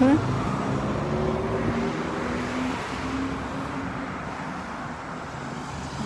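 A car driving past through a street intersection, its engine and tyre noise slowly fading as it moves away.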